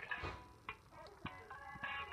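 LeapFrog Tag reading pen tapping on a book page with a few sharp clicks, then an electronic chime of several steady tones from the pen's small speaker in the second half.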